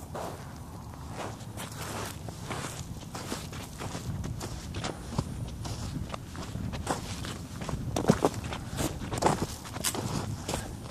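Footsteps of a person walking outdoors at a steady pace, about two steps a second, with louder steps near the end.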